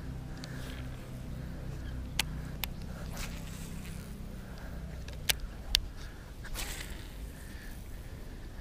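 Baitcasting reel being cranked to retrieve a lure, its gears giving a low steady hum that stops a little before five seconds in, with four sharp clicks along the way and handling rustle on the rod and clothing.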